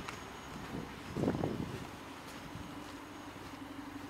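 Audi A1 1.4 TFSI idling quietly with a low, steady hum, and a short louder noise about a second in.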